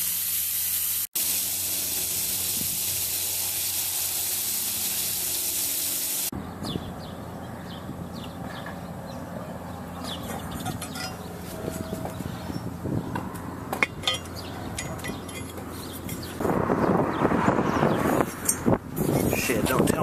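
Water spraying under pressure from a leak in a rusty water supply pipe, where the pipe was kinked: a steady hiss that stops abruptly about six seconds in. After that come quieter clicks and scraping, and a louder rough noise near the end.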